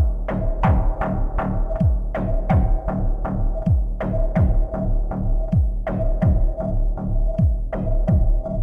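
Techno from a live electronic set: a steady four-on-the-floor kick drum, each kick dropping in pitch, about two and a half hits a second, over a sustained droning tone and deep bass.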